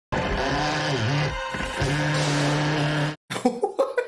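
Electric power drill running steadily from the film soundtrack, its pitch dipping briefly about a second in as it bites, then steady again until it stops near the end.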